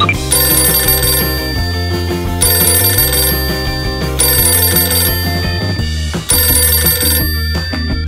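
Telephone ringing sound effect: four rings, each about a second long and about two seconds apart, over background music.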